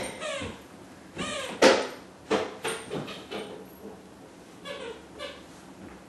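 A scatter of short squeaks, knocks and clicks, the loudest a sharp knock about a second and a half in, from a chocolate Lab puppy and a toddler chasing a thrown toy across a hardwood floor.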